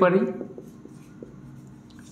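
A man's voice trails off at the start, then a marker pen writes on a whiteboard with faint scratching strokes and small taps.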